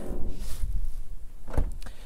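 Wind buffeting the microphone as a low rumble, with a single sharp thump about one and a half seconds in.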